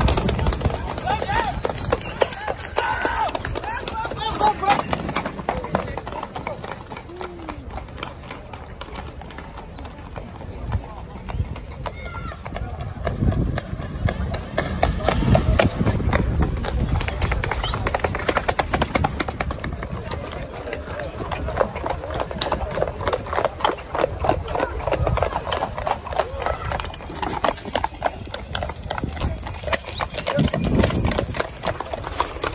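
Horses' hooves clip-clopping on a tarmac road as horses trot past pulling light carts. The hoofbeats grow louder and fade as each horse passes, over the chatter of a crowd.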